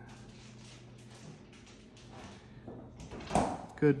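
Quiet room tone with a faint steady low hum, then a brief rubbing, scraping handling noise about three and a half seconds in as the scissors are brought to the latex tubing.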